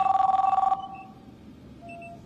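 Electronic desk telephone ringing: one trilling two-tone ring lasting under a second, then dying away, with a faint short tone near the end.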